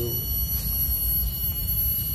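Steady high-pitched insect drone, several thin tones at once, over a constant low rumble.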